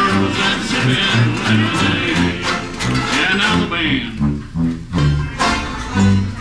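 A banjo band playing a lively tune: many four-string banjos strumming together in a steady rhythm over a bass line that steps from note to note.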